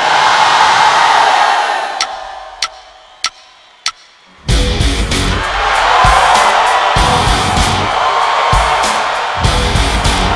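A crowd roar fades away over the first few seconds, then four evenly spaced drumstick clicks count in, and about four and a half seconds in a heavy rock band comes in loud with distorted electric guitar and pounding drums.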